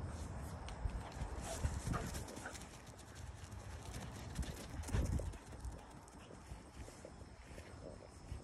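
A greyhound's paws thudding on lawn in quick, irregular beats as it runs, with a louder thump about five seconds in.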